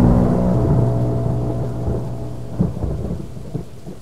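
Thunderstorm sound effect: rumbling thunder and rain under a held musical chord that fades out over the first couple of seconds. A sharper crack of thunder comes about two and a half seconds in, and the whole thing dies away.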